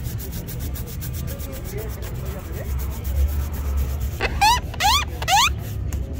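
Shoe-shine brush scrubbing a black leather shoe in rapid, regular strokes over a low background rumble. About four seconds in come three short rising squeaks, the loudest sounds here.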